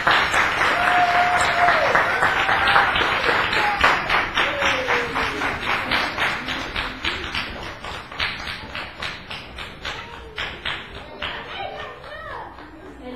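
Audience applause with a steady clap about four times a second, loud at first and fading toward the end, with a few voices calling out early on.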